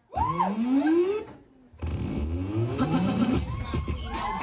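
Performance music mix playing a short, rising engine-rev sound effect that breaks off about a second in. After a brief gap, the beat-driven music comes back in about two seconds in.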